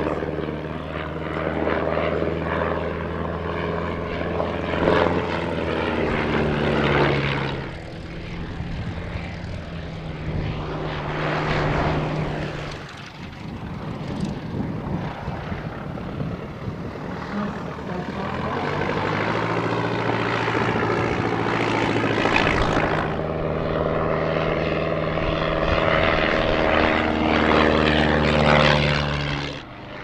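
Single-engine piston propeller aircraft flying past at an air display. Its engine drone drops in pitch as it passes, once about a quarter of the way in and again near the end. In between it fades and then builds again as it comes back round.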